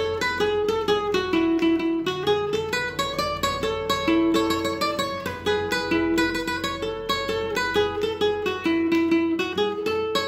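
Classical-style acoustic guitar played solo, with fast, even plucking under a melody of longer held notes.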